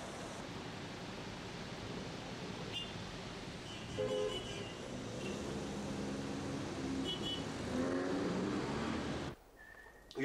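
City street traffic: a steady rush of cars driving past, with a few short horn beeps. About four seconds in, the loudest beep rises briefly above the traffic.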